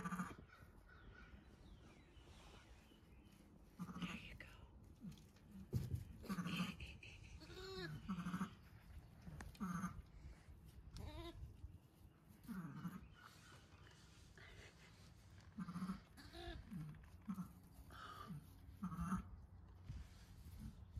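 Repeated short bleats from a newborn, about a dozen calls a second or two apart, some low and soft, some higher-pitched.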